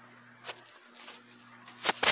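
Two short sharp knocks over a faint steady hum, a light one about half a second in and a much louder one near the end.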